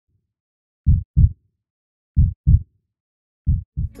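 Heartbeat sound effect: three low double thumps in a lub-dub rhythm, starting about a second in and spaced about 1.3 seconds apart.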